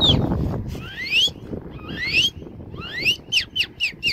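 Clear whistled notes sliding up in pitch: two slow rising slides about a second apart, then a quick run of short up-and-down notes near the end. A low rush, like wind on the microphone, sits at the very start.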